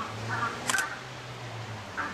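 A single sharp camera shutter click about two-thirds of a second in, over faint chattering calls of grey-headed flying-foxes at their roost.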